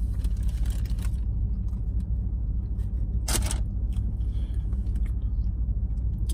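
Steady low rumble of a parked car's running engine, heard inside the cabin, while a man chews a bite of hot dog. A short rustle or crunch comes a little past halfway.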